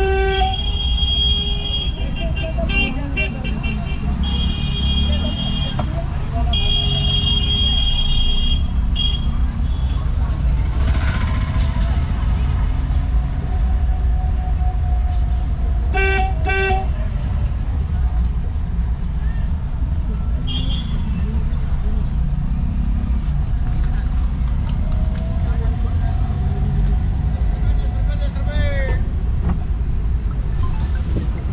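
Vehicle horns honking repeatedly in slow street traffic: a run of short and longer toots over the first nine seconds and two quick toots about sixteen seconds in, over steady engine and road rumble heard from inside a moving vehicle.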